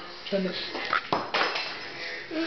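A small spoon clattering: two sharp clinks a little over a second in, each ringing briefly.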